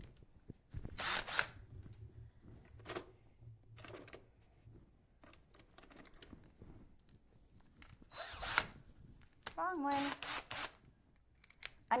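Electric drill driving out screws from cabinet hardware. Its motor runs steadily for about four seconds near the start, with a few sharp scrapes and clicks from the bit and screws, then more brief ones later.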